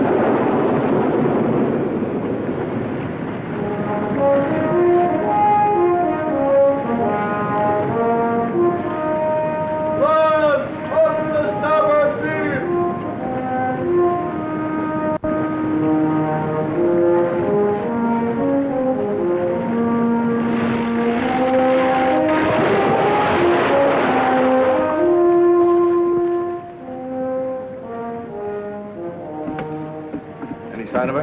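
Orchestral film score with brass carrying a melody. A rushing wind-and-sea noise is loud at the start and swells again about two-thirds of the way through.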